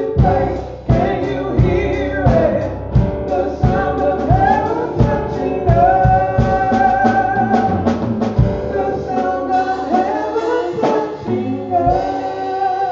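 A woman sings a gospel song into a microphone, backed by an electric keyboard and a drum kit keeping a steady beat. The drum beat drops out a little past two-thirds of the way through while the singing and keyboard carry on.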